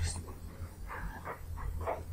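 A steady low electrical hum, with a few faint, short sounds in the second half.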